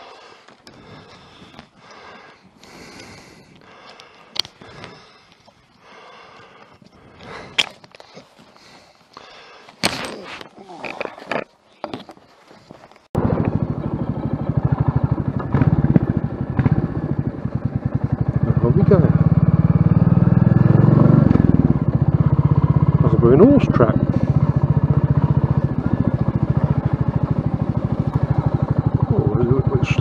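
Quiet scuffs and short clicks for the first dozen seconds. Then, cutting in abruptly, a single-cylinder Royal Enfield motorcycle engine running loudly as it rides along at a steady pace, its firing pulses heard as a rapid even thud, with some wind noise.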